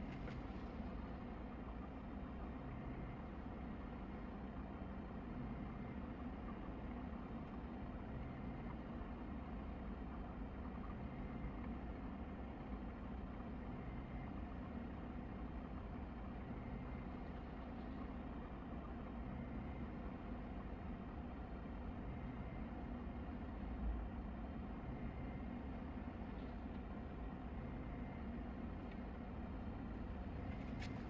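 A resin UV curing station running with a steady low hum from its turntable motor as it turns the print. There is one soft low thump late on.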